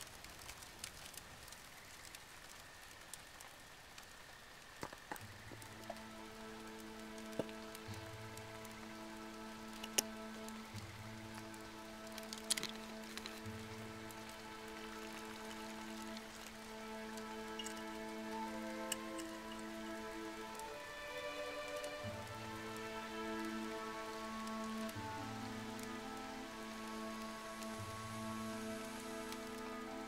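Campfire crackling, a soft steady hiss with scattered pops. About five seconds in, a quiet film score enters: sustained chords over a slow low pulse roughly every three seconds.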